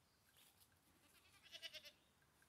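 A goat bleating once, a short quavering bleat about a second and a half in.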